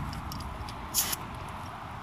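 A garden hose spray nozzle giving a short hiss of spray about a second in, over a steady low background noise.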